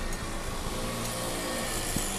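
Car driving at low speed, steady engine and road noise heard from inside the cabin.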